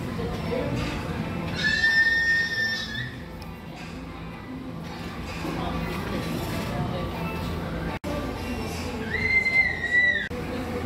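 Background music and indistinct voices, with two held high whistle-like tones, each about a second and a half long: one near the start and one at the very end.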